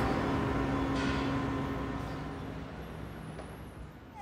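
Steady outdoor background noise with a low hum, fading out gradually over a few seconds.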